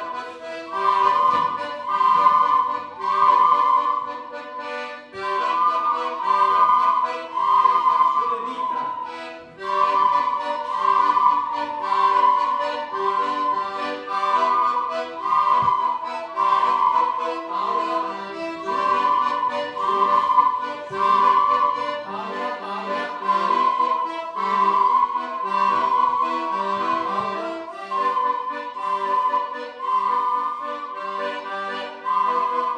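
A group of children playing plastic ocarinas together, sounding mostly one high note in short repeated rhythmic phrases, over a lower chordal backing accompaniment.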